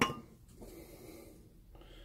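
A single sharp metallic clink right at the start as a piece of rusty scrap metal is set down among other metal finds, followed by faint handling noise as the next piece, a rusty bolt, is picked up.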